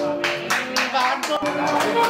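Hands clapping in an even beat, about four claps a second, with a voice briefly heard over it.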